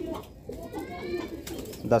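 Domestic pigeons cooing, with a higher rising call near the middle.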